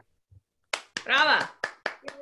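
One person clapping hands over a video call: separate sharp claps starting near the end of the first second, with a short voiced cheer between them.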